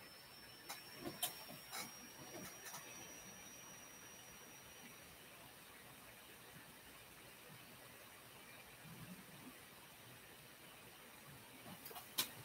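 Near silence: room tone, with a few faint clicks in the first few seconds.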